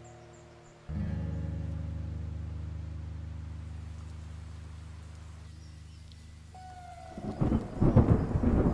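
Rolling thunder builds up near the end and becomes the loudest sound. Before it, a low musical chord sounds about a second in and slowly fades away.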